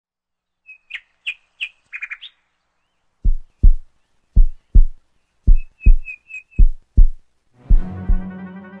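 Sound-design intro: a few short bird chirps, then a heartbeat-like double thump repeating about once a second with more chirps over it, and brass music coming in near the end.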